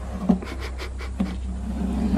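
Blue painter's tape being peeled off a freshly painted wooden panel, with a short run of crackling clicks about half a second in, over a steady low hum.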